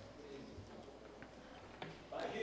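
Near silence: faint room tone, with a single light click near the end.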